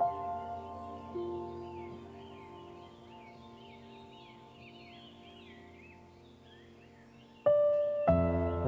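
Gentle background music: sustained piano-like notes ring and slowly fade, and a new chord comes in near the end.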